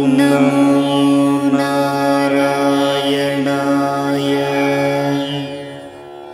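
Devotional Hindu mantra chanting set to music: a voice holds one long sung note over a steady low drone, then fades out near the end.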